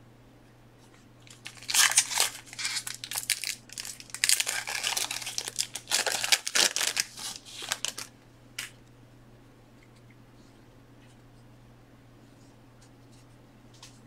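Wrapping being torn and crinkled in dense, crackly handfuls for about six seconds, followed by a single short click and then quiet room hum.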